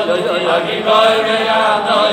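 Men's voices singing a slow Hasidic wedding melody in long held notes that step up and down in pitch.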